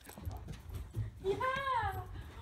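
German Shepherd whining, one high cry that rises and then falls about a second and a half in. Dull thumps of paws on a carpeted floor run beneath it; the dogs are excited to see their owner.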